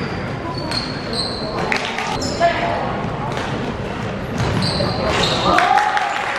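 Basketball game sounds in a reverberant sports hall: rubber-soled sneakers giving short high squeaks on the wooden court, a basketball bouncing, and players' and onlookers' voices. Squeaks come repeatedly throughout, and a voice rises louder near the end.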